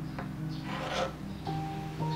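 A serrated knife sawing through the crust of a baked pound cake: one short rasping stroke about a second in, over soft background music.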